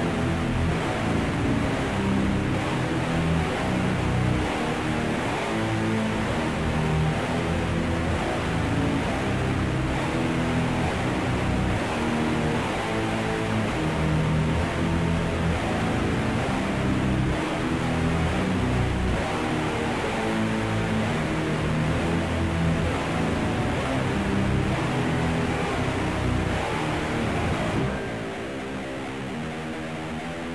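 Death/doom metal recording: heavily distorted guitars and bass playing slow, held chords in a dense, steady wall of sound.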